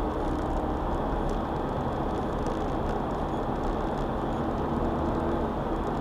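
Steady road and engine noise heard from inside the cabin of a car driving along a concrete road, with the tyres running on the pavement.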